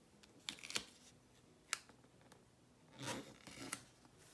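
Faint handling of a paper sticker on a planner page: a few sharp clicks in the first two seconds, then two brief rustles near the end as the sticker is repositioned and pressed down.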